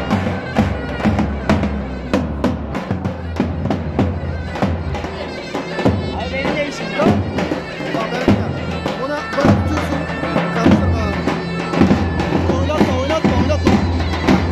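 Davul drum and zurna playing a Turkish folk dance tune: a shrill, wavering reed melody over a steady drumbeat.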